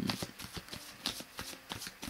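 Tarot cards being handled or shuffled by hand: a quick, irregular run of light card clicks, about six a second.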